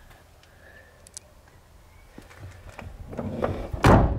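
A small hatchback's car door shut with one sharp thud just before the end, after a couple of seconds of building low rumble from wind and handling on the microphone.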